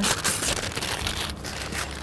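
Paper bag being peeled apart by hand and loosely crumpled, a crinkling rustle that is loudest in the first half second and then goes on more lightly.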